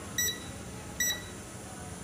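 Digital multimeter beeping twice, two short high beeps under a second apart, as its selector is switched to the kilo-ohm resistance range.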